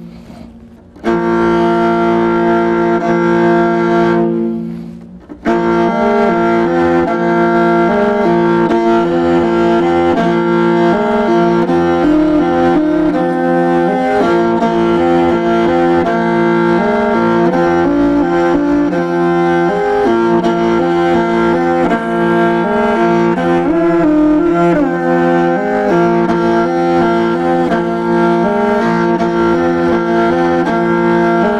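Morin khuur (Mongolian horsehead fiddle) played solo with a bow: a melody of held and moving notes, broken briefly near the start and again about five seconds in, then flowing on without a pause.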